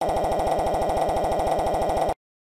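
Synthesized text-scroll blips of a game-style dialogue box: a rapid, even string of short identical beeps, about fifteen a second, at one steady pitch, sounding as the text types out.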